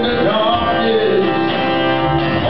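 A man singing a melody into a microphone while strumming an acoustic guitar.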